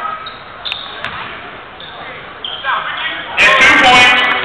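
Live basketball game in a gym: crowd voices and a few short squeaks from the court, then the crowd breaks into loud cheering and shouting about three and a half seconds in.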